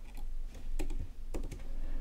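A few scattered keystrokes on a computer keyboard as text is being edited.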